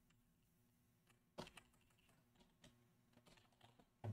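Near silence with a few faint computer keyboard keystrokes, isolated clicks, the clearest about a second and a half in.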